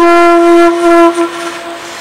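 Bansuri (bamboo transverse flute) holding one long, steady low note that fades away a little over a second in.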